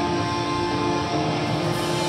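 Live metal band: distorted electric guitars hold long droning chords that shift in pitch, and cymbals wash in near the end.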